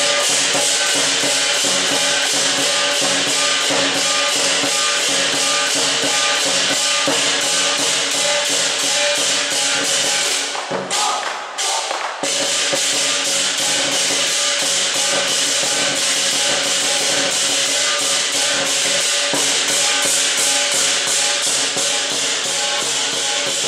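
Chinese lion dance percussion: drum and clashing cymbals playing a fast, steady beat of a few strokes a second, with some ringing tones. The playing breaks off briefly near the middle and then picks up again.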